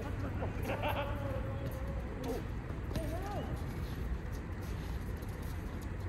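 Futsal players shouting to each other across the court: a few drawn-out calls, one about a second in held for over a second, another around three seconds in, over a steady low hum.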